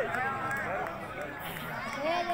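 Speech: voices talking, growing quieter about a second in.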